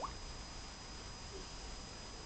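Quiet room tone: a steady faint hiss with a thin high whine, and a very short rising chirp right at the start.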